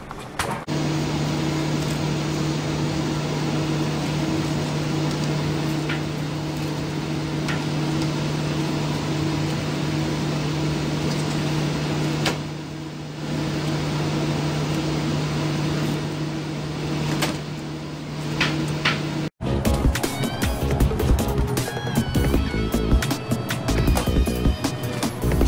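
A steady mechanical hum with a constant low tone, dipping briefly near the middle, with a few faint clicks. It stops abruptly about 19 seconds in, and background music follows.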